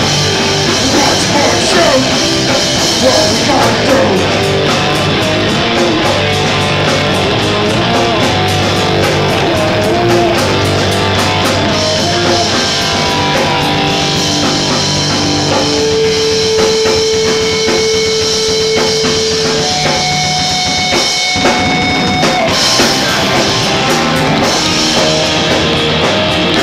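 A punk rock band playing live and loud: distorted electric guitars and a drum kit driving fast cymbals, with a few long held notes partway through.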